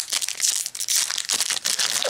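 Foil wrapper of a Yu-Gi-Oh! Mega Pack booster being torn open by hand: a dense, continuous crinkling and crackling.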